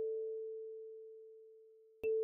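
A single kalimba tine note, A4, ringing out and slowly fading. The higher D5 note before it dies away in the first half second.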